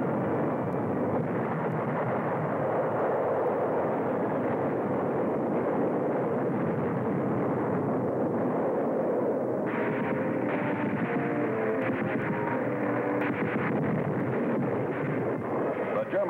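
Soundtrack battle effects of an artillery barrage: a continuous, even din of shellfire and explosions with no single blast standing out. About ten seconds in, music with short held notes comes in under it.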